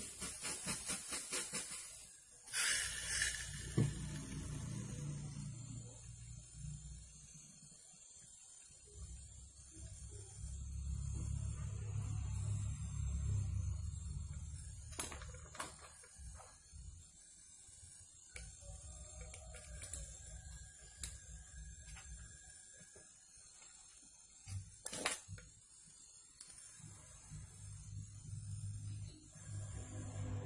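Trigger spray bottle squirted onto a steel air-rifle barrel in two quick runs of spritzes in the first few seconds. After that, quieter handling noise with a couple of sharp clicks.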